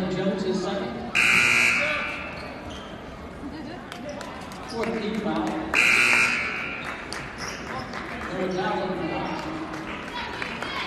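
Two short, loud, shrill referee's whistle blasts ringing through a gym, the first a little over a second in and the second about four and a half seconds later, with crowd voices between.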